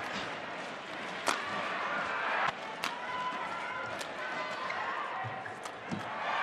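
Badminton rally: about five sharp racket hits on the shuttlecock, roughly a second apart, over a steady murmur of the arena crowd.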